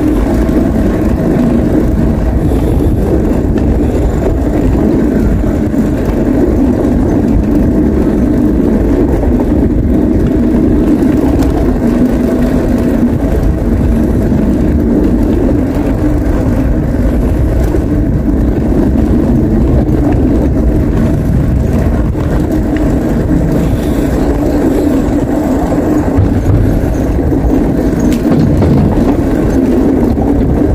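Steady, loud riding noise from a moving bicycle: wind rushing over the camera microphone and tyres rolling on the paved path, continuous with no breaks.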